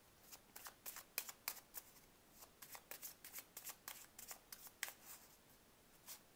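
Tarot deck being shuffled by hand: a faint, irregular run of quick card clicks and slaps as the cards are pushed through the deck.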